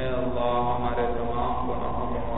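A man's voice chanting a prayer in long, held melodic phrases.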